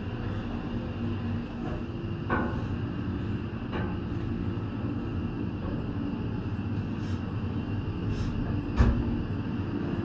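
Steady rumble and hum of a detachable eight-person pulse gondola cabin travelling on its haul rope out of the top station, heard from inside the cabin. A few sharp clunks break in, the loudest near the end.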